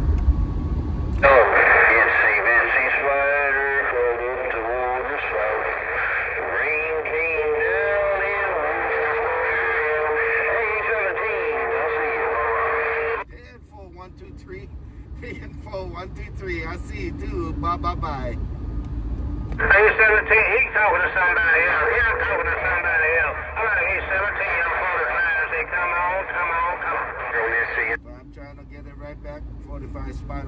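Cobra 148 GTL CB radio speaker playing incoming transmissions: two long stretches of narrow, tinny, hard-to-make-out voices, each switching on and cutting off abruptly. Between them come weaker, hissy, distorted signals. A steady tone sounds under the later part of the first transmission.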